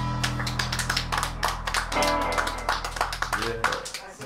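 Final chord of a live rockabilly band, electric guitar and upright bass, ringing out and fading away under scattered audience clapping. The held notes die out just before the end, when a voice comes in.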